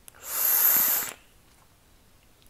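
A hissing draw of air through a Lost Vape Ursa Quest vape mod fired at 70 watts, lasting about a second, with a small tick just before it.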